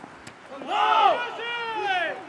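A loud shout from someone on or beside a football pitch: two drawn-out calls starting about half a second in, the second longer and falling in pitch.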